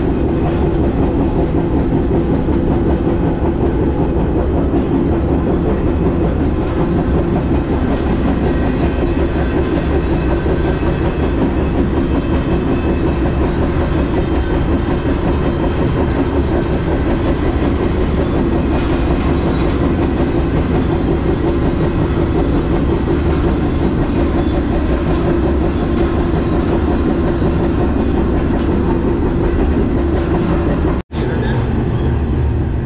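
Freight train running at speed, heard from the open platform of a double-stack intermodal well car: a steady, loud rumble and clatter of steel wheels on rail.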